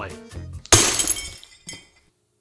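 Glass shattering: one sudden crash with tinkling shards that dies away in under a second, over quiet background music.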